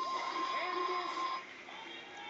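Television results broadcast through a laptop speaker: a steady electronic reveal sting sounds with voices cheering as a contestant is named safe. It drops away about a second and a half in.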